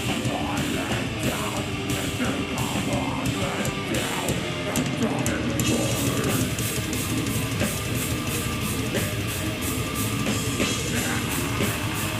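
A death metal band playing live through a PA: distorted electric guitars over drums and cymbals, loud and dense.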